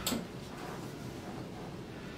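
A single short, sharp click or hiss right at the start, then quiet room tone with a faint low hum.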